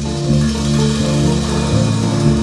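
Live rock band playing an instrumental passage: electric guitars and bass holding chords and notes that change about every half second, with no singing.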